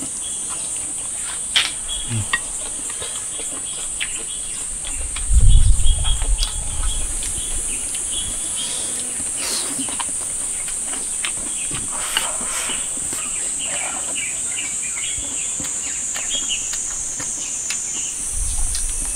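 A steady, high-pitched chorus of insects runs throughout, with scattered faint clicks and a brief low rumble about five seconds in.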